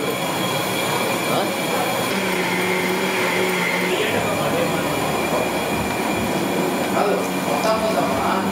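Steady rushing noise with a low hum, from a large stove burner heating a wide kadai of oil for deep-frying gulab jamun.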